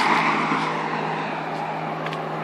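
A car going by on a road, its tyre and engine noise slowly fading away, over a steady low hum.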